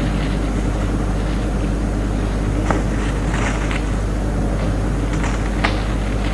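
Steady electrical hum and hiss from a lecture recording during a pause in the talk, with a few faint clicks.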